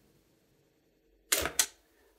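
An external Iomega Zip 100 drive ejecting its cartridge: a short mechanical ejection noise in two quick parts about a second and a half in, as the disk is pushed out of the slot.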